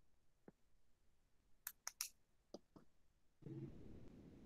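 Near silence on a video-call audio line, broken by a handful of faint, sharp clicks. About three and a half seconds in, a low steady hum comes in suddenly.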